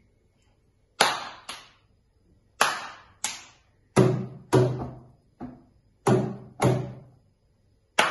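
A rhythmic run of finger snaps, hand slaps on a wooden tabletop and hand claps, nine sharp strikes, mostly in pairs about half a second apart. The later strikes have a deeper thud, like flat hands slapping the table.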